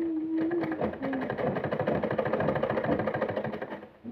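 Sewing machine stitching cloth: a rapid, even clatter of needle strokes that starts about half a second in and stops just before the end.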